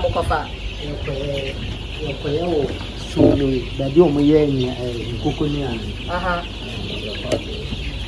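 A large flock of four-week-old layer chicks calling in a poultry house: a steady high chorus with many short individual calls rising above it.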